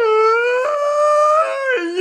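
A long, high-pitched vocal wail or cry, held on one steady pitch, stepping a little higher about half a second in and falling away near the end.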